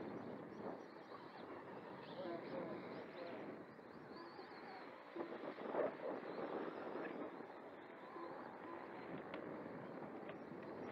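Faint, indistinct background voices, with a thin high whine that wavers up and down.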